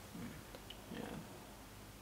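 A quiet pause in the commentary with only faint room tone, and a soft murmured "yeah" from a commentator about a second in.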